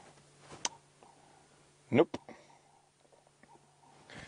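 Mostly quiet pause with a faint steady low hum, a single sharp click about half a second in, and a man saying 'Nope' about two seconds in.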